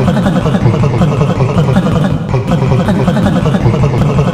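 A loud, dense jumble of many overlapping voices layered on top of one another, with no pauses.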